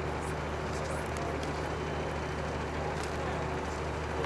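Heavy machinery engine running with a steady low drone.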